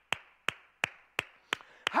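One man clapping his hands in a steady rhythm, about three sharp claps a second.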